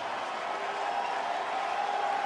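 Ballpark crowd cheering and applauding steadily after a home run, calling for the batter's curtain call.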